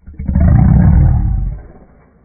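A large XL pit bull giving one deep, drawn-out bark that sounds like a roar, lasting about a second and a half.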